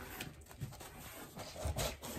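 A cardboard mailer box being opened by hand: irregular rubbing and scraping of cardboard flaps, loudest near the end as the lid comes up.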